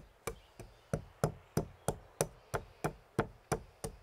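Stone pestle pounding black peppercorns in a stone mortar: a steady run of short, sharp knocks, about three a second, as the peppercorns are crushed.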